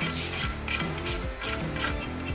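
About six short, rasping, ratchet-like metal strokes from a CVT secondary clutch being worked by hand, over background music.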